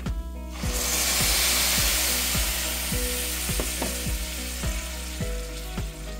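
Water poured into a hot stainless skillet of browned ground beef hits the pan about a second in and sizzles loudly, the hiss slowly easing as the meat is stirred.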